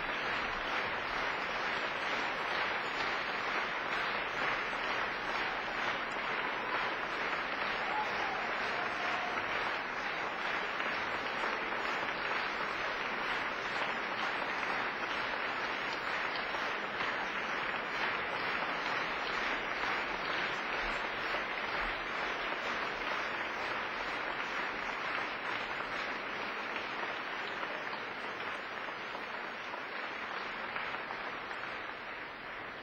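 Audience applauding: dense, steady clapping from many hands that eases slightly near the end.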